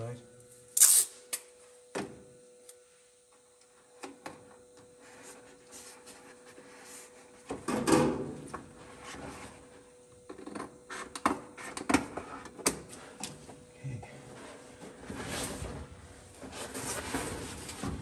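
Stiff paper pattern pieces rustling and crinkling as they are handled and pressed into place, with a sharp ripping sound about a second in, as of tape pulled from a roll. A faint steady hum sits underneath.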